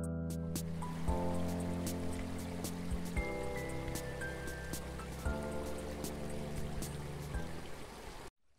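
Background music of sustained chords that change every two seconds or so. From about half a second in, the sound of shallow water running quickly along a channel is mixed in under it.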